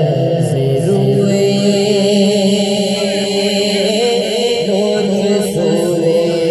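A naat, an Urdu devotional song praising the Prophet Muhammad, sung into a microphone. A melodic male voice wavers over a steady, low, held drone.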